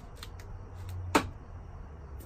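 Hand tools clinking against the steel strut and bolt as a ratchet and socket are worked onto the strut's bottom bolt. There are a few light irregular taps, and one sharp ringing clink just past a second in is the loudest.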